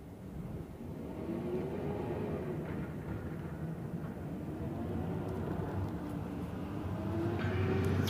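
Car cabin noise: a steady low engine and road rumble, with a faint whine that slowly rises and falls. Near the end come a few sharp clicks and rustles of the phone being handled.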